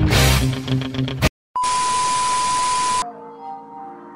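Loud music cuts off about a second in. After a brief silence comes a TV-static transition effect: a hiss with a steady high test-tone beep, lasting about a second and a half. Softer music then starts.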